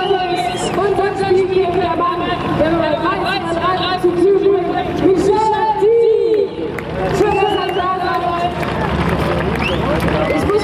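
Steady babble of many voices from a large crowd of spectators, with speech running through it.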